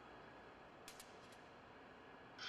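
Near silence: faint room tone, with a few faint clicks about a second in.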